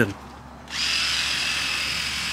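A high-pitched electric power-tool motor starts abruptly about two-thirds of a second in and runs at a steady whine.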